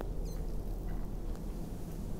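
Faint lip smacks and small squeaky puffs of a man drawing on a cigar, a few light ticks in the first second and a half, over a low steady background rumble.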